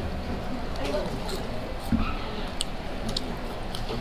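A few small clicks and taps, like a plastic fork in a paper cup of cheese fries, with quiet eating sounds over faint background voices.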